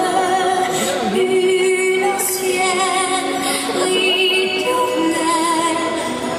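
Music: a song with a woman singing long, held notes with vibrato over instrumental accompaniment.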